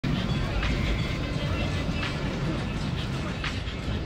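Busy outdoor ambience: a steady low rumble under voices, with some music in the mix.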